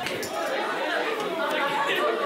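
A group of schoolgirls chattering at once, many voices overlapping.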